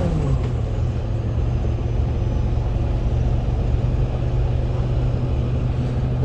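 Semi truck's diesel engine and tyre noise heard inside the cab while driving. The engine note drops sharply at the start as the revs fall, then holds a steady drone.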